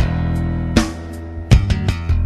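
Instrumental band music, guitar over sustained bass notes, with sharp drum hits: one at the start, one just under a second in, and a quick run of three from about one and a half seconds in.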